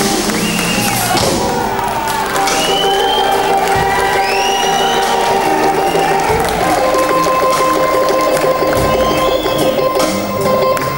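Live electric blues band, with electric guitar, keyboard and drums, holding long sustained notes while the crowd cheers.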